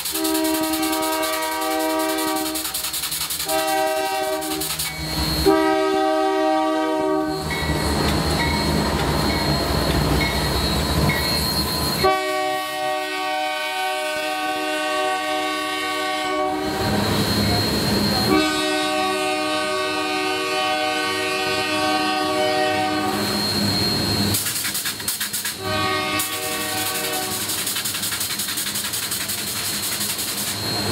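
Diesel freight locomotive's multi-chime air horn sounding a series of long and short blasts. Between the blasts, the passing freight cars rumble and clatter along the rails.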